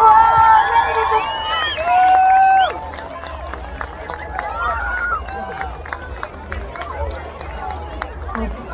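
Crowd of many voices cheering and calling out as a fireworks display ends, loudest in the first three seconds with one long held shout, then dropping to lower scattered voices.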